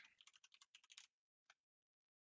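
Faint computer keyboard typing: a quick run of key clicks over the first second and one more click a moment later.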